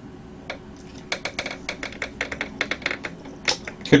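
Close-miked eating of cheesecake: an irregular run of small wet mouth clicks from chewing, several a second, starting about a second in.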